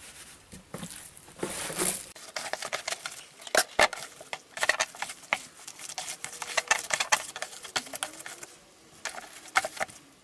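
Hands squeezing and kneading wet paper clay made with insulation in a plastic bowl: irregular wet squelching and pattering, with a few sharper knocks.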